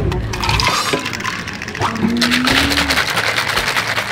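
Ice rattling fast inside a shaker cup as a milk tea is shaken by hand, a dense rattle starting about two seconds in.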